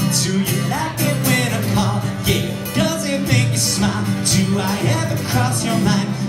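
Live unplugged band music: acoustic guitar strummed in a steady rhythm, about two strokes a second, with a voice singing over it.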